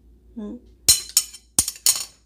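Stainless-steel measuring spoon being set down on a marble countertop: four sharp metallic clinks in quick succession, the first the loudest.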